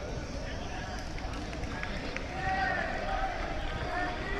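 Voices over a steady low background noise, with a louder, higher voice calling out from about two seconds in.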